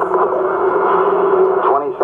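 Archival Apollo 11 launch-countdown broadcast in the gap between callouts: a narrow, radio-like recording with a steady hiss and hum. The announcer's voice comes back in near the end.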